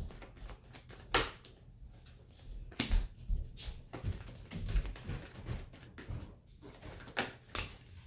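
A deck of tarot cards being shuffled by hand, overhand, with soft rustling and a few sharp, irregularly spaced taps and slaps of the cards.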